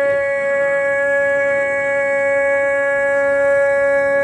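One long note held steadily in Sikh kirtan by harmonium and voice, with no tabla strokes.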